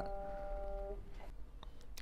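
Feurich 122 upright piano notes in the middle register ringing on and dying away, gone about halfway through. A couple of faint clicks near the end.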